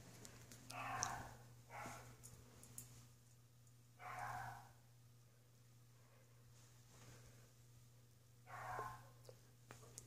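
Near silence with a faint steady low hum, broken by four soft breaths or sighs close to the microphone, about one, two, four and eight and a half seconds in.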